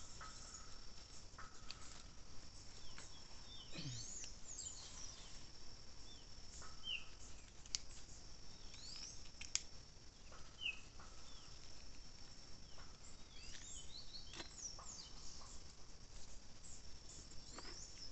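Outdoor field ambience: birds chirping now and then over a steady high-pitched insect drone, with a few faint clicks.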